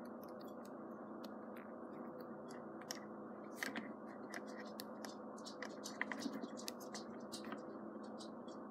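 Small scattered plastic clicks and light scrapes from handling a Mega Construx dragon figure: its joints being bent into pose and its feet set down on a wooden tabletop, with a few louder clicks about midway and again near the end.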